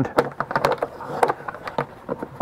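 Metal snap catches and a small lock on an old cylinder-record carrying case being worked by hand: a scatter of irregular clicks and small knocks as the stiff catches resist opening, perhaps for want of oil.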